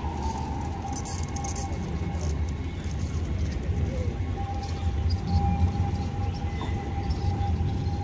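Siemens Combino trams at a stop: a steady low rumble with a thin, constant electrical whine from the trams' equipment, growing a little louder about two thirds of the way in as a second tram draws up.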